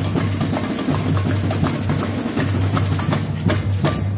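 Samba bateria playing a batucada: snare drums beaten with sticks over the deep, pulsing boom of surdo bass drums, the whole percussion section playing together loudly.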